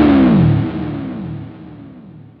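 Lavish Merisandre electric guitar through distortion: a held note that dives down in pitch on the tremolo arm from about half a second in, fading away as it falls.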